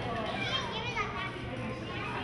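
Spectators' voices calling out and chattering around the ring, with high children's voices among them, loudest about half a second to a second in.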